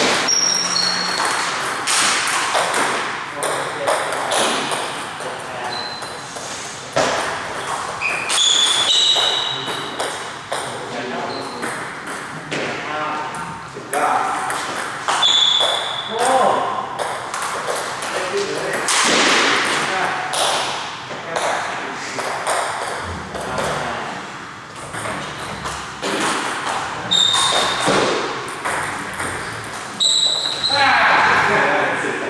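A table tennis rally: the ball clicks rapidly back and forth between bats and table, with short breaks between points.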